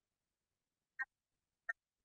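Dead silence on a video-call line, broken by two very short clipped blips, one about a second in and one near the end.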